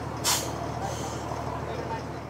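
Boat engine running steadily with a low hum, under a wash of wind and water noise, with one short, sharp hiss about a quarter of a second in.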